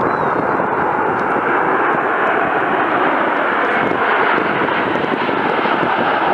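Aermacchi MB-339 jet trainers of an aerobatic formation flying past: a steady rush of jet-engine noise that swells slightly about four seconds in.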